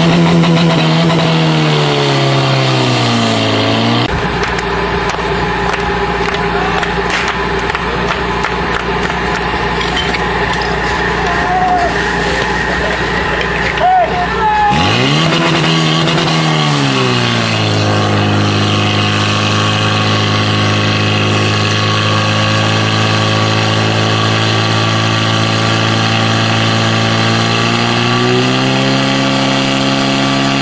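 Portable fire pump engine running at high speed. Twice its pitch flares up sharply as the throttle is opened, then sinks and settles into a steady high-speed run that holds to the end.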